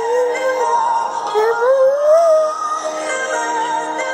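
A girl's high voice singing a slow melody that glides up and down, with held notes, over accompanying music.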